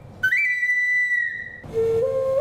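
A small handmade whistle, held cupped in the hands, sounds one long high note that steps up slightly as it starts and dips just before it stops. Near the end a much lower note on a bamboo flute begins.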